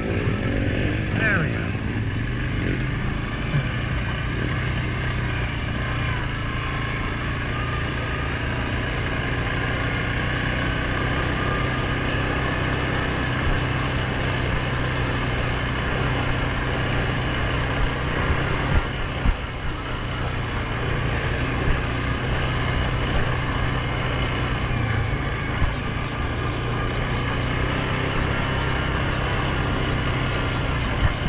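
Suzuki King Quad 750 ATV's single-cylinder engine running steadily under way, with a few short sharp knocks in the second half.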